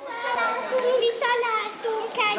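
A group of children talking and calling out over one another, their high voices overlapping.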